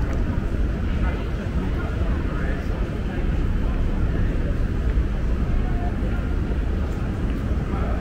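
City street ambience: a steady low rumble with indistinct voices.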